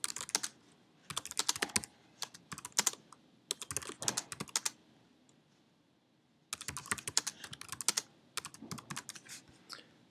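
Typing on a computer keyboard in quick bursts of keystrokes, with a pause of about a second and a half midway.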